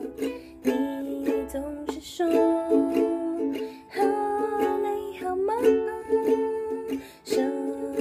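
Ukulele strummed in a steady chord rhythm, with a woman singing softly along to it.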